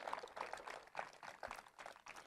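Faint, scattered clapping from a crowd, thinning out and dying away.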